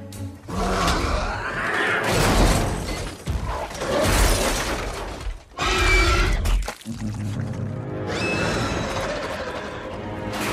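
Action film soundtrack: dramatic orchestral score over loud crashing and smashing as a monster attacks, with a creature's roar.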